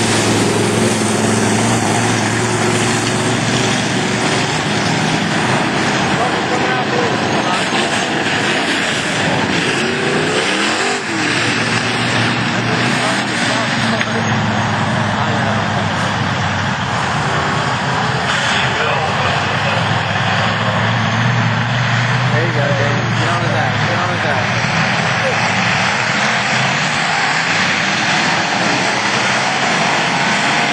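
A field of stock cars racing on a dirt oval, their engines running loud and continuous throughout.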